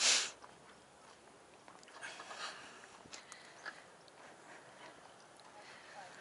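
A short, sharp breath or sniff close to the microphone at the very start, then faint outdoor quiet with a few soft clicks and rustles.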